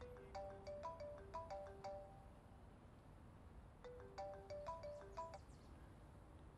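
Mobile phone ringing with an incoming call: a short melodic ringtone of clear electronic notes, played twice with a pause of about a second and a half between.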